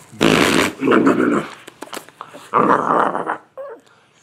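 A man blowing raspberries on a baby's bare belly: two long buzzy blows of lips against skin, the second starting about two and a half seconds in.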